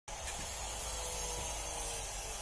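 Steady background noise: an even hiss with a low rumble underneath and a faint steady tone, with no distinct knocks or footfalls.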